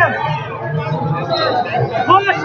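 Several voices talking at once, overlapping chatter among people close by and around the hall.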